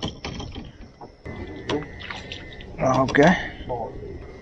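A handheld tally counter clicking a few times as it is pressed to count caught crappie. A man's voice speaks briefly about three seconds in.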